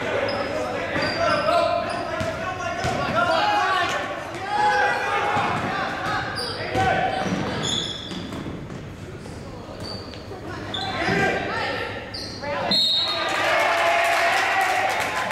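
Basketball being dribbled and bouncing on a gymnasium's hardwood floor during a game, with players and spectators calling out throughout.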